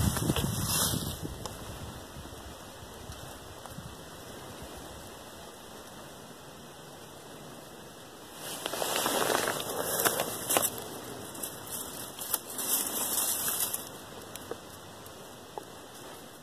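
Plastic shipping bag crinkling and rustling as it is handled and pulled open around a bundle of river cane plants, in irregular bursts that come mostly in the second half after a quieter few seconds.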